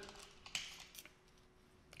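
Near silence with a few faint short clicks, the clearest about half a second and a second in, over a faint steady hum.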